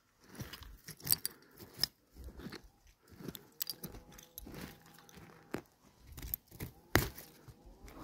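A gloved hand digging and scraping through loose soil, moss and roots: irregular crunching and rustling with a few sharp clicks, the sharpest near the end.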